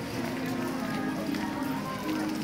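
Voices chanting or singing on steady held low notes, over the bustle of people walking outdoors.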